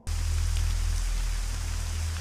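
Film soundtrack rain: a steady hiss of heavy rain over a deep, continuous low rumble, cutting in suddenly at the start.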